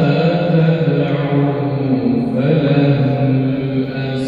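A man's voice reciting the Quran in melodic tajwid style, drawing out one long melismatic note that bends slowly, shifting to a new pitch a little past halfway.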